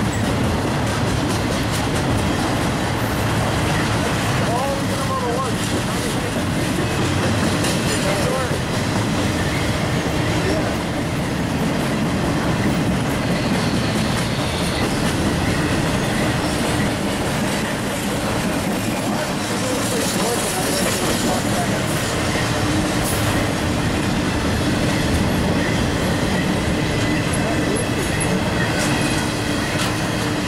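Trailer-on-flatcar intermodal freight train rolling past close by: a steady, unbroken rumble of steel wheels on rail as the cars go by.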